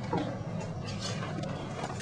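Faint scratching strokes of a dry-erase marker on a whiteboard over a steady low room hum.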